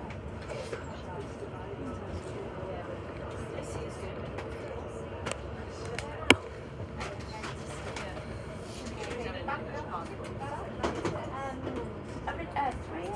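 Train running slowly, heard from inside the carriage: a steady low rumble with a faint steady hum, one sharp click about six seconds in, and muffled voices of people nearby toward the end.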